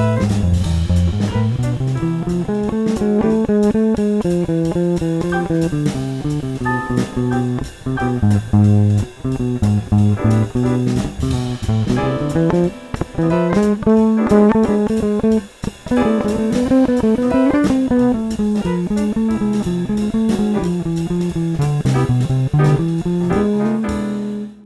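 Red four-string electric bass played fingerstyle, improvising a stepping melodic line on the C Ionian augmented scale over a C major-seventh chord. The scale's raised fifth, G♯, clashes with the chord's natural G to add tension.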